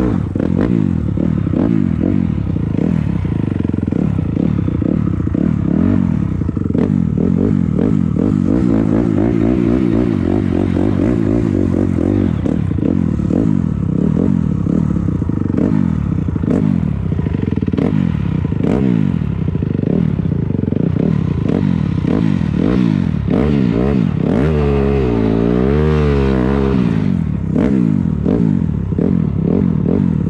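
250 dirt bike engine revving hard, its pitch climbing and dropping over and over as it shifts through the gears, with gravel crunching and clattering under the tyres. About 25 s in, the revs swing quickly up and down for a couple of seconds.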